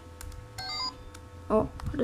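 DX Mystic Morpher, a flip-phone-shaped electronic toy, switched on and giving a brief, faint run of stepped electronic beep tones from its small speaker, with a few clicks of plastic handling.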